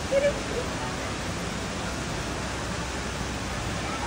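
Steady hissing background noise at an even level, with a short faint voice sound in the first half-second.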